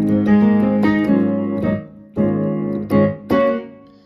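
Yamaha CK61 stage keyboard playing a layered patch of CFX Stereo grand piano and DX Crisp electric piano, transposed down an octave. A run of chords is struck and held, with a short break near the middle.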